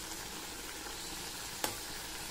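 Mixed vegetables cooking in a steel kadai with a steady sizzling hiss, and a single sharp clink of the steel spoon against the pan about one and a half seconds in.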